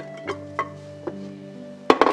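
Background music with long held notes, with a few light clicks and knocks of kitchen items being handled on a counter, and a sharper knock near the end.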